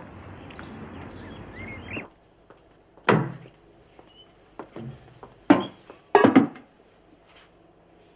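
Steady outdoor hiss with a short chirp cuts off about two seconds in. Then, in a quiet room, a door opens with a sharp knock, and a few thuds and knocks follow as heavy spray equipment is carried in; the loudest come in a cluster about six seconds in.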